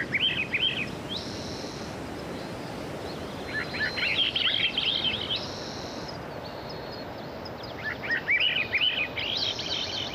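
Songbird singing short phrases of quick rising and falling notes, three times about four seconds apart, with brief higher buzzy notes between phrases, over a steady rushing background noise.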